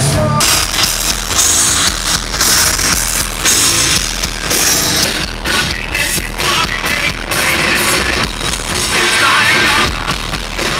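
Loud rock music played by a band, with electric guitar and a steady, driving drumbeat.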